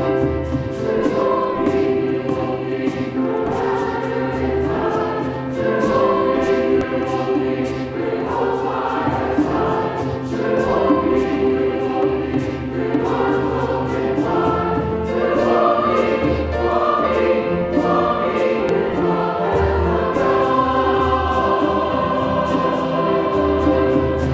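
Mixed church choir singing a hymn-style anthem with piano accompaniment. A light, steady ticking beat runs under the voices.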